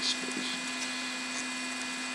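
Steady low electrical hum with a constant background hiss, unchanging throughout.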